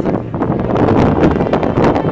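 Loud, gusty wind, a dense rushing noise that swells and eases.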